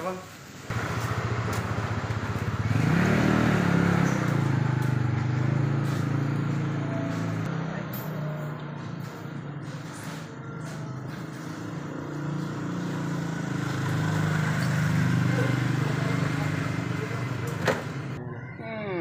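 A motor vehicle engine running at a steady low pitch. It starts abruptly near the beginning and swells louder twice.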